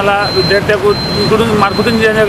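A man speaking, with road traffic noise behind his voice.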